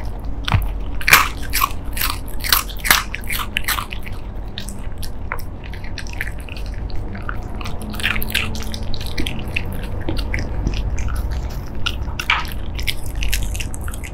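A Shiba Inu crunching small round crisp 'xiao mantou' milk-biscuit snacks, close up. The crisp bites come thick and fast for the first few seconds, then thin out to scattered crunches as it picks up the last pieces.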